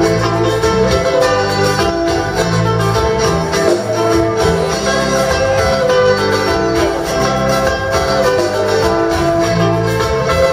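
Live band music: plucked guitars over electric bass notes, playing without a break.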